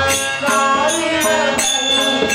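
A male voice singing a devotional bhajan through a microphone, with instrumental accompaniment and a steady percussion beat of sharp strikes about twice a second.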